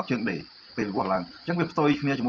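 Crickets chirring steadily in a high band behind a man's talking.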